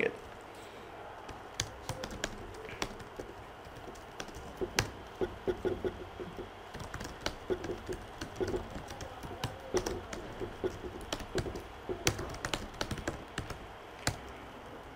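Typing on a laptop keyboard: irregular runs of key clicks, with a few louder keystrokes scattered through.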